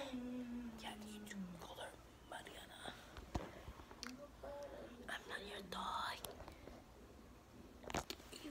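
Children whispering close to the microphone, opening with a drawn-out voiced sound that falls in pitch over the first second and a half.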